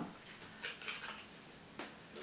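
Quiet handling sounds: a few faint rustles and light clicks as a small cardboard gift box is opened and metal keychains are lifted out.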